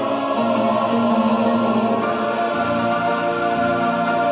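Background music: a choir singing long, held notes.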